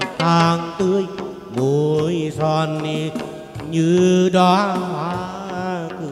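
Chầu văn ritual music: a male singer holding long, wavering, melismatic notes over a plucked moon lute (đàn nguyệt), with sharp percussion clicks between phrases.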